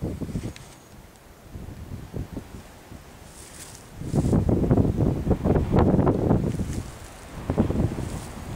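Wind buffeting the camera microphone: a quieter stretch, then a strong gust of low rumbling noise from about halfway through that fades near the end.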